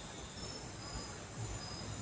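Night insects chirping faintly: a steady high trill with short, repeated higher chirps over it.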